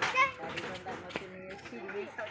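Children's voices talking and calling, a high-pitched voice loudest at the start, with a single light knock about a second in.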